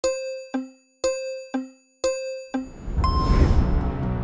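Three countdown chimes, one a second, each a bright ding followed half a second later by a lower tone. About three seconds in, music starts with a rising whoosh and deep bass.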